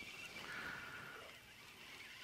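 Quiet open-air ambience: a faint even hiss, with a faint, short high whine a little over half a second in.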